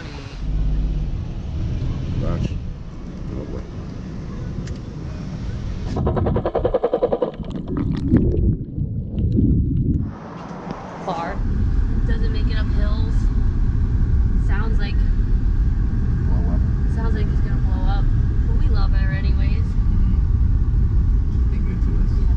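Steady low rumble of a car's road and engine noise heard from inside the moving car, taking over about eleven seconds in. Before it comes uneven outdoor noise, with a short rapid buzzing stretch about six seconds in.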